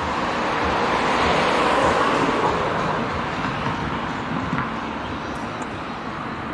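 A road vehicle passing: a steady rushing noise that swells over the first two seconds and then slowly fades.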